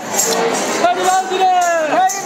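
A voice singing long, held, slightly wavering notes in a Gavari folk chant; the phrase starts about a second in and bends down in pitch near the end.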